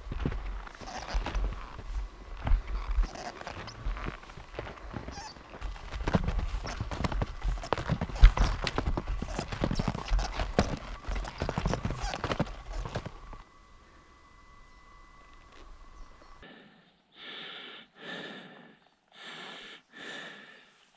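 Footsteps crunching in snow, irregular and close, with wind rumbling on the microphone; it quietens about 13 seconds in. From about 16 seconds in comes heavy rhythmic breathing, roughly one breath a second.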